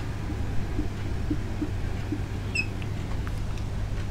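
Whiteboard marker squeaking and tapping against the board while writing, with one brief high squeak about two and a half seconds in, over a steady low room hum.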